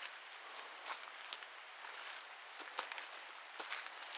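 Faint sound of someone moving through brush: light footsteps and rustling, with a few soft clicks scattered through.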